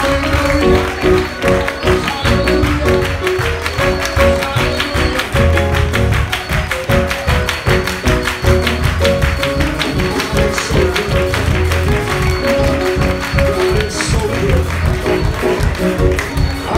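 Live church gospel music: keyboard chords and bass over a fast, steady percussive beat.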